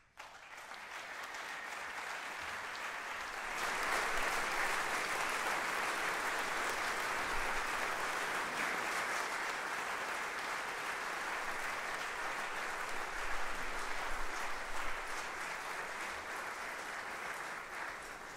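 Concert audience applauding after a brass band piece, growing fuller about three and a half seconds in and dying away near the end.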